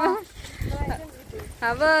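Women's voices in short fragments, then a woman laughing loudly and high near the end.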